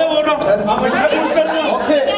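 Crowd chatter: many people talking at once, their voices overlapping so that no single speaker stands out.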